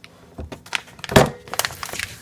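Countertop vacuum sealer's lid being opened, with a few clicks and one sharp clack about a second in, followed by quick crinkling of the plastic vacuum-sealer bag as it is lifted out.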